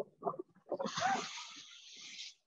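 A few faint voice fragments, then a hiss lasting about a second and a half that fades out.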